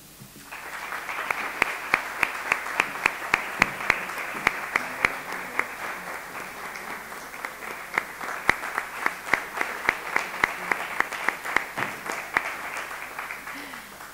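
Audience applauding, with several sharp individual claps standing out close by; it starts about half a second in and dies away near the end.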